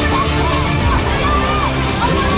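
Background music, with voices of an onlooking crowd underneath.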